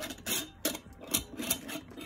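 A handful of light clicks and short scrapes, about five in two seconds, from a hand working the metal screw lid on a glass mason-jar oil lamp.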